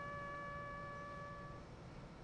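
Played-in music: a brass instrument holding one long, steady note that fades out near the end.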